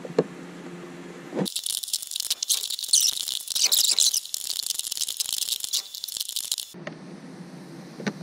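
A wrench turning a long bolt out of a cramped spot on a truck's dash: rapid, high-pitched rattling clicks that start about a second and a half in and stop abruptly near the end.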